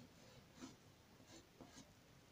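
Faint scratching of a graphite pencil on paper: several short sketching strokes.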